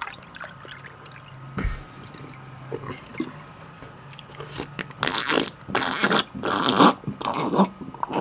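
Close-miked wet eating sounds of bone marrow and slimy ogbono soup: small clicks and smacks, then four short slurps in the second half.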